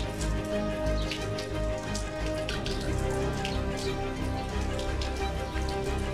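Water running from a brass wall tap and splashing, with irregular spattering, under soft background music with long held tones.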